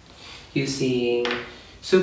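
A man speaking a few words, with a sharp click just before the end, typical of handling a plastic foundation bottle and its cap.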